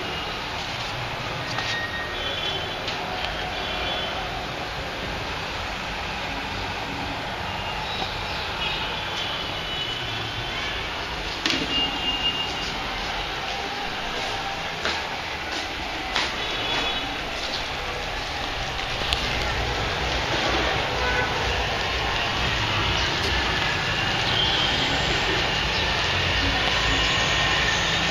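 Steady rain-and-street background noise, growing louder toward the end, with a few short clicks from the phone being handled.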